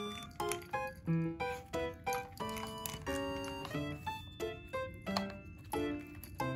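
Bouncy comic background music: short pitched notes in a quick, steady rhythm.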